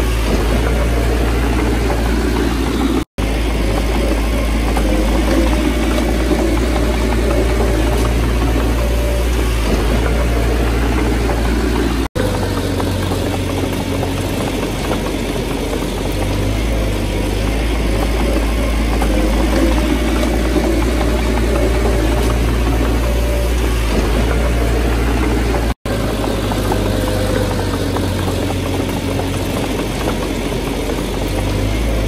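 Diesel engine of a small crawler bulldozer running steadily as it pushes a pile of dirt and stone. The sound drops out for an instant three times, about three, twelve and twenty-six seconds in.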